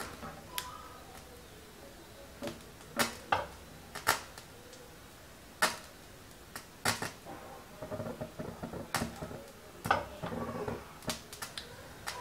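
Cooking oil heating in a small tempering pan over a gas flame, giving off irregular sharp crackles and pops that come thicker in the second half.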